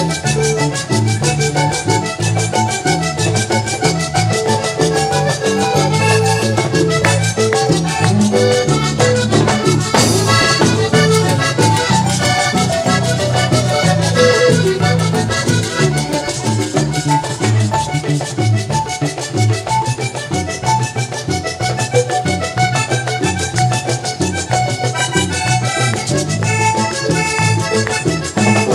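Live vallenato band playing an instrumental break in merengue rhythm, the piano-key button accordion leading the melody over bass, electric guitar, congas and drum kit.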